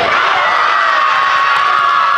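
A crowd of spectators and young players cheering and shouting in a loud, steady mass of high voices as a basket goes in.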